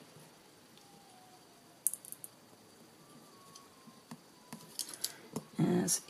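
Light clicks and taps of hands handling paper card pieces and small craft supplies on a work surface, with a short cluster of sharp clicks about two seconds in and a few fainter ticks later.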